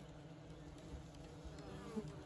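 Faint, steady buzzing of honey bees at the entrance hole of a swarm-trap box, where a newly caught swarm has settled in and is bringing in pollen.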